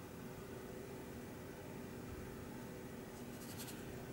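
Faint scratching of a paint brush stroking oil paint onto primed cardboard, with a brief, sharper scratchy stroke near the end, over a steady low hum.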